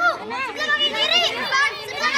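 A group of children, with adults among them, shouting and calling out over one another in high, excited voices, giving directions to a blindfolded player in an outdoor game.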